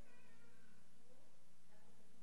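Faint, distant voice of an audience member speaking away from the microphone, in short pitched phrases.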